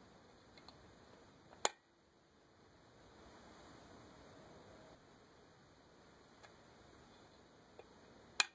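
Faint steady hiss of quiet background, broken by one sharp click about one and a half seconds in and a much fainter click near the end.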